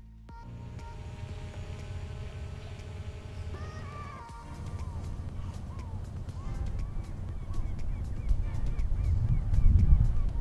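Birds calling over and over. From about halfway the short calls come roughly twice a second. Under them, wind rumbles on the microphone and grows louder toward the end.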